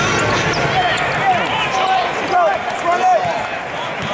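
Basketball sneakers squeaking on a hardwood court and a basketball bouncing as play starts after the tip-off, over a steady crowd murmur. The short squeaks, heard several times, are the loudest sounds.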